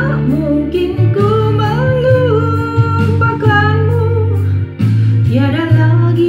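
A woman singing long held notes into a handheld microphone over an instrumental backing track. One phrase ends a little before five seconds in, and a new phrase starts with an upward slide.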